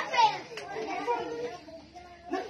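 Indistinct high-pitched voices talking, without clear words.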